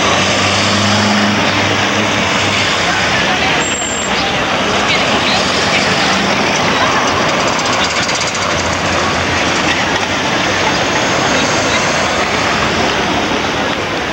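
Steady outdoor street ambience: a wash of crowd chatter mixed with traffic, with a low engine hum from a vehicle in the first few seconds and again a little past the middle.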